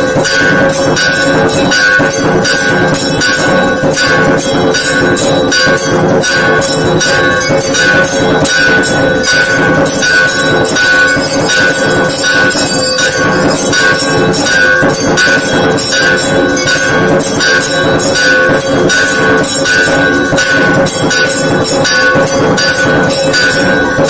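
Temple bells ringing continuously and loudly, with rapid, evenly repeated strikes over a sustained ring.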